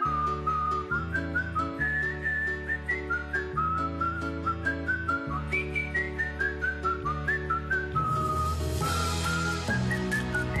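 An advertising jingle: a whistled tune with sliding notes plays over bass, chords and a steady beat. A swell of hiss comes in about two seconds before the end.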